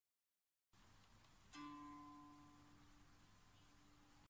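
A guqin string sounding one soft plucked note, struck sharply about a second and a half in and left ringing as it slowly fades. It is the zhuaqi fingering, the left thumb hooking the string up from behind and releasing it.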